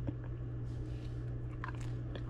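A person chewing a mouthful of bread: soft mouth sounds with a few faint small clicks, over a steady low hum.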